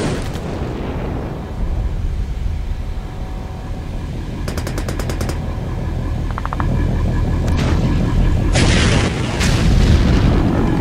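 Battle sound effects of automatic gunfire: a rapid burst of about ten shots a second just before halfway and a shorter burst after it, over a steady low rumble. Two loud rushing blasts follow near the end.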